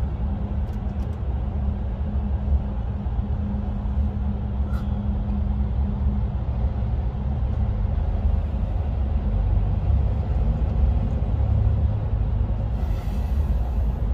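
Steady low drone of a lorry's engine and tyres heard from inside the cab while driving through a road tunnel, with a constant low hum underneath.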